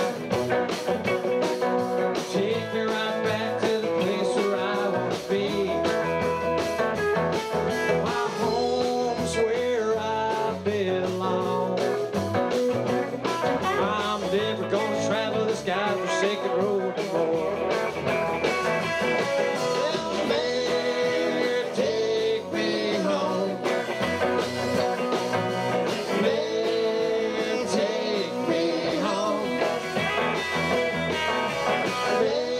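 Live rock band playing electric guitars over a drum kit with a steady beat.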